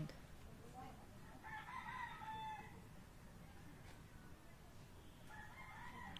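Two faint, distant pitched calls over low background noise: one about a second and a half in, lasting about a second, and another starting near the end.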